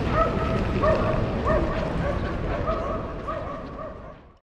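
A dog yipping over and over, about one and a half yips a second, over steady low background noise. The sound fades out near the end.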